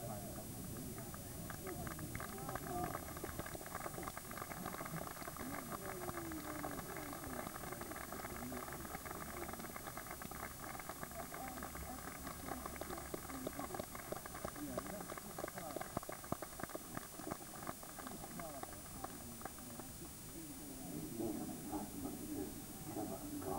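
Crowd of spectators clapping in a steady patter of many hands, with voices chattering underneath. The applause eases off near the end.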